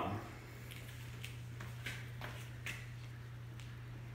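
Quiet room tone with a steady low hum and a few faint, scattered clicks as a bearing clamped between acrylic discs on a bolt is handled and turned.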